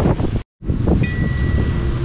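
Wind buffeting the microphone, broken by a short dropout about half a second in. About a second in, a metal-tube wind chime is struck and rings on with one steady high tone over the wind.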